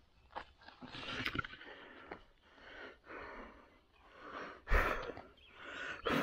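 Rustling and crackling of leaves, twigs and moss as a hand picks a mushroom from the forest floor, in short scattered bursts, with one louder thump near the end.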